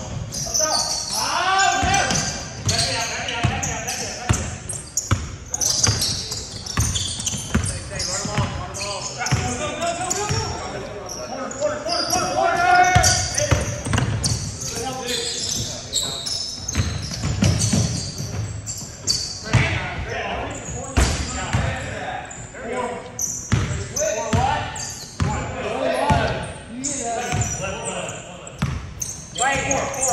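Basketball bouncing and dribbling on a hardwood gym floor, mixed with players' shouts and calls, echoing in a large gym.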